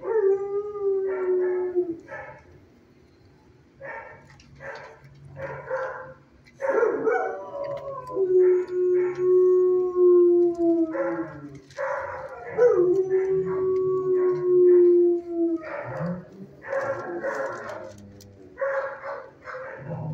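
Shelter dogs howling and barking in the kennels: three long howls that each start a little higher and settle, with runs of quick barks in between.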